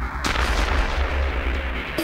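Trance track intro: a deep, steady bass with a sudden burst of white noise about a quarter second in, a crash-like impact effect that then hangs as a hiss.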